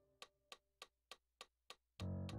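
A quiet break in electronic keyboard music: only a sharp, evenly spaced click keeps time, about three ticks a second, while the last held notes die away in the first half.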